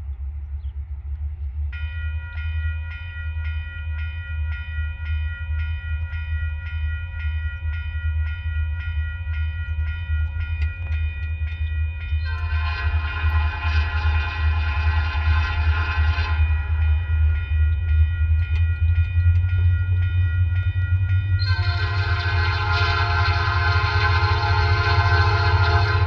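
An approaching freight locomotive's air horn, on a GP40-2 leading, sounds two long blasts: the first about halfway through, lasting about four seconds, and the second starting near the end. A steady, fluctuating low rumble of wind on the microphone runs throughout. From about two seconds in, a steady high ringing that pulses about three times a second sounds underneath.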